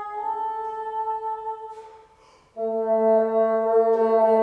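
Solo bassoon. A held note fades away about halfway through, and after a short pause the player comes back in loudly on a lower sustained note.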